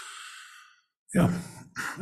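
A man sighs into the microphone: a breathy rush with no pitch that fades out within about a second. After a short pause he says "Yeah."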